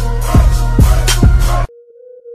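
Hip-hop track with heavy bass, kick drums and sharp snare hits, cutting off suddenly near the end to leave a thin steady electronic tone.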